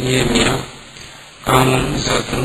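A man's voice speaking in a lecture, in phrases with a short pause in the middle.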